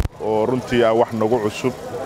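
A man speaking in a steady, continuous stream into close microphones, with a sharp click at the very start.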